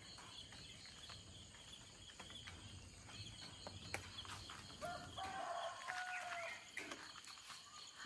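A rooster crowing faintly, one stepped call of under two seconds starting about five seconds in, over a steady chirring of crickets.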